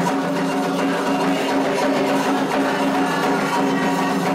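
Candomblé ritual music for the orixás Iansã and Ayrá: atabaque drums and a struck bell keeping a steady rhythm under sustained sung chanting.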